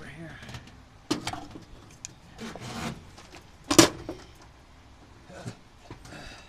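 A few separate knocks and clatters of handling, with a short rustle between them. The loudest knock comes a little before the four-second mark and a smaller one comes near the end.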